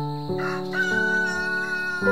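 A rooster crowing once, a long call held for more than a second, over grand piano music.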